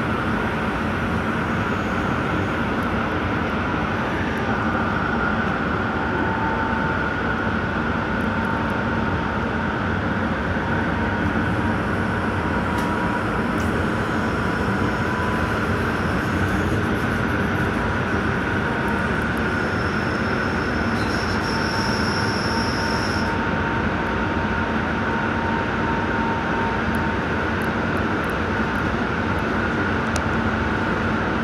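Light-rail train running along the track, heard from inside the front car: a steady rumble of wheels on rail with a thin, steady high whine over it. About two-thirds of the way through, a high squeal from the wheels lasts about three seconds and cuts off suddenly.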